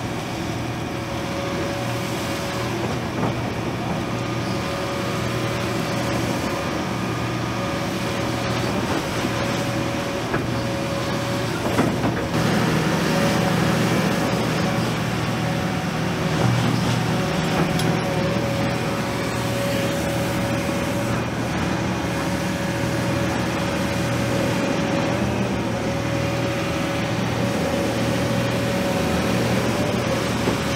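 Doosan DX350LC-7 35-tonne crawler excavator working, its diesel engine running steadily with a held whine. About twelve seconds in the engine grows louder as it takes on load while the bucket digs gravel. There are a few sharp knocks.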